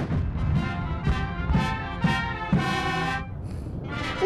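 Military marching band playing brass chords, a series of short held notes over low drum beats, fading off near the end.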